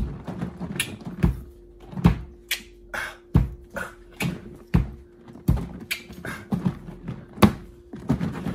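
Protein shake being shaken hard in a plastic orange juice jug: the liquid and powder inside slosh and thud against the jug with each stroke, about two uneven strokes a second.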